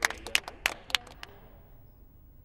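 Sparse applause from a small audience at the end of a live song: about ten separate hand claps that thin out and stop within about a second and a half.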